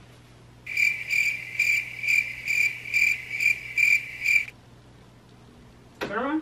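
Cricket-chirp sound effect, the comic 'crickets' gag for an awkward silence: a high, steady chirping that pulses about twice a second for nearly four seconds, starting and stopping abruptly.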